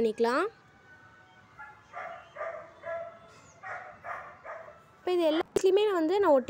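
A dog barking in the background: a run of about six short yaps over some three seconds, quieter than the nearby voice.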